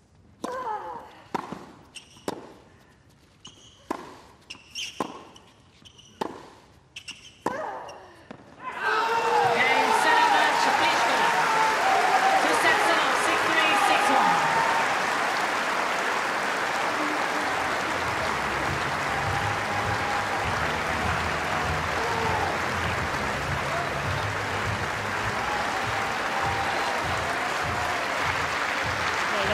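Tennis rally: a dozen or so sharp strikes of racket and ball over about eight seconds. Then a large stadium crowd breaks into loud cheering and applause as the match point is won, settling into steady applause.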